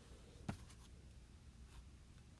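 Near silence with one light, sharp tap about half a second in, a stylus against a tablet's glass screen, followed by a couple of much fainter ticks.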